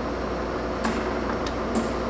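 Large engine lathe running with a steady hum, and a few faint clicks after about a second as the controls on its carriage apron are handled.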